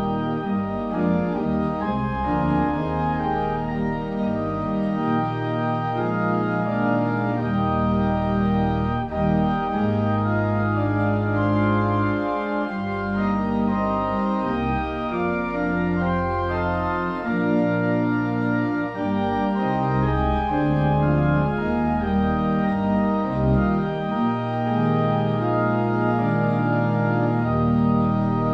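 Organ playing a hymn tune in held chords that change every second or so.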